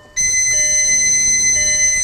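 Electronic warning beeps from a car's aftermarket A-pillar gauges as the ignition is switched on: a steady high-pitched beep starts just after the opening, with a lower beep switching on and off beneath it.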